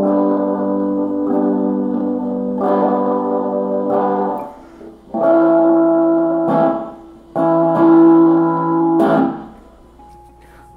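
Electric guitar played through the Pedal Pi's digital reverb effect: about four strummed chords, each left to ring out for a second or two before the next.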